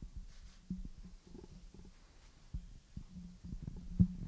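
Low rumbling with a faint hum and scattered soft thumps, the clearest about two and a half seconds in: room and handling noise picked up by a table microphone.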